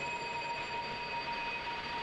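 A faint, steady hum and hiss with a few thin, held high tones over it, unchanging throughout.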